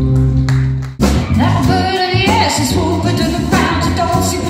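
Live band music with singing. A held chord breaks off abruptly about a second in, and a different passage starts, with a gliding lead melody over bass and drums.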